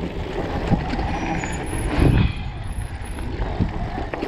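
Mountain bike rolling fast over a bumpy dirt trail: a steady rumble of tyres and frame, with a heavier jolt about two seconds in.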